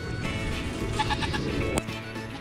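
Goats bleating over background music with steady sustained notes, and one sharp knock just before the end.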